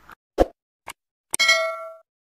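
Subscribe-button animation sound effect: three short clicks, then a bell ding that rings for about half a second and cuts off.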